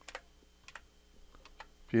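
Computer keyboard keystrokes, a handful of separate, irregularly spaced clicks as a file name is typed at a command line. A voice starts right at the end.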